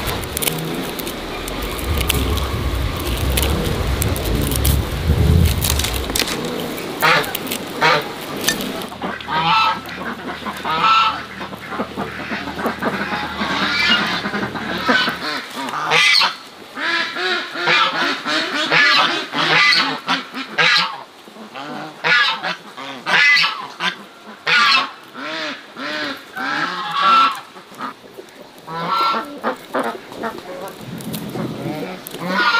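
Domestic geese honking in a long run of separate, repeated calls that start about a quarter of the way in. At the start, the rustle and crackle of chit grass stems being handled close by.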